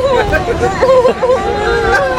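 Several teenagers laughing and chattering over each other, with the steady low rumble of a moving school bus underneath.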